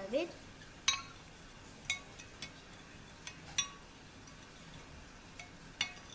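A metal spoon stirring liquid jelly mix in a glass dish, clinking against the glass about seven times at irregular intervals, each clink ringing briefly.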